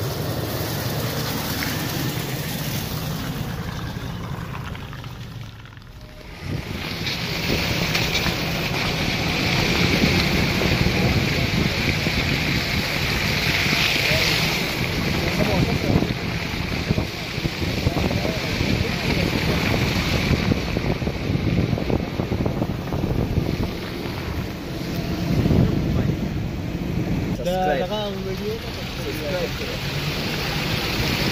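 Toyota Land Cruiser running beside the camera. After a brief dip about six seconds in, there is steady rushing wind on a microphone on the outside of the moving SUV, with its tyres churning through slush and snow. A few faint voices come near the end.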